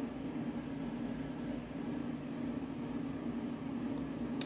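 Steady low hum over a faint even hiss: background room tone with no distinct event.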